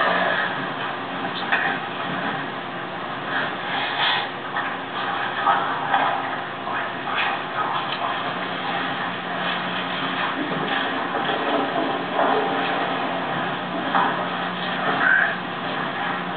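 Television broadcast sound heard through a TV set's speaker: a steady hum under indistinct, muffled background sounds, with scattered brief faint noises.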